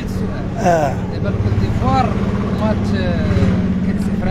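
A vehicle engine running steadily close by, a constant low hum, with a man's voice breaking in with short vocal sounds a few times.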